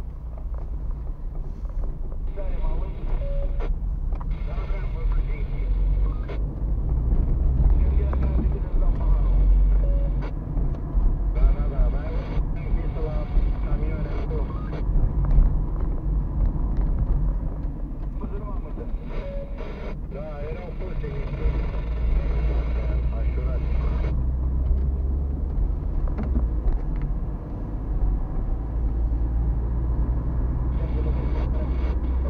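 Steady low rumble of a car's engine and tyres, heard from inside the cabin while driving slowly. Stretches of indistinct talk come and go several times over it.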